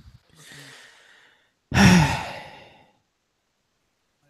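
A man breathes in softly, then lets out a loud sigh about two seconds in. The sigh falls in pitch and fades away within about a second.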